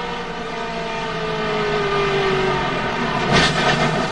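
NASCAR Cup car's V8 engine, heard from inside the cockpit, running with a steady note that falls slowly in pitch as the car slows. About three seconds in, a loud harsh crunch of impact as the car piles into the wreck.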